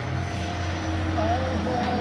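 A steady low engine drone runs under faint background voices.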